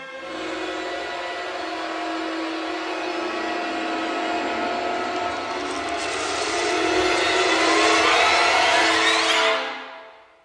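Cinematic intro sound design: a sustained drone under a wash of noise that swells steadily louder, with rising sweeps near the end, then fades out quickly just before the end.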